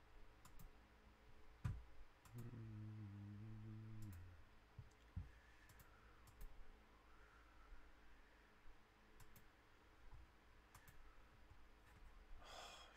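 Near silence with faint, sharp computer-mouse clicks, scattered and often in quick pairs. About two seconds in there is a low, steady hum that lasts about two seconds.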